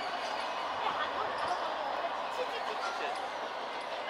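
Passenger train coaches rolling away on the track: a steady rolling noise of steel wheels on rails, with a few soft knocks.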